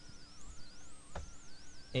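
Faint, slowly wavering high-pitched tones with a single click about a second in.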